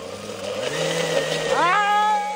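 Oster glass-jar countertop blender running, pureeing tomato, onion and water; its motor hum steps up in pitch about half a second in. Near the end a woman's drawn-out voice rises over it.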